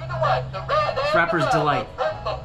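A 2002 Gemmy talking and dancing Homer Simpson toy playing its recorded Homer voice and sound effects through its small speaker: a warbling, gliding, squawky voice, busiest about a second in, over a steady low hum.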